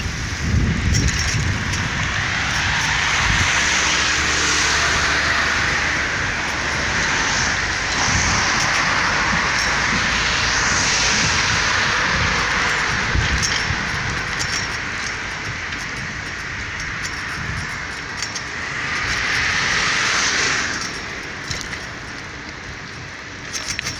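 Steady rushing street noise of a camera on the move: wind on the microphone and passing traffic, swelling and fading several times, with a few low knocks.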